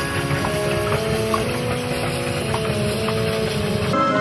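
Narrow-gauge steam train's wagons rumbling past, with background music playing over it.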